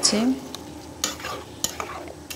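A spatula stirring chunks of pumpkin curry in a nonstick wok, with a few short scrapes and clicks against the pan over a low sizzle of frying.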